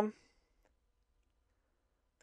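The end of a spoken word fading out, then near silence: faint room tone.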